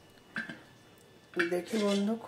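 A short metallic clink of a stainless steel lid against an iron wok, then a person's voice in long held notes, like singing, starting about a second and a half in and louder than the clink.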